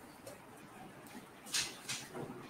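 Quiet background noise of a room heard over a video call, with a brief soft hiss about one and a half seconds in.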